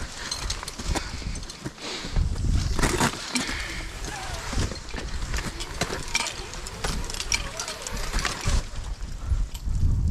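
Wind rumbling on a helmet-mounted camera microphone, with scattered clicks and scrapes of ice-climbing gear against the ice.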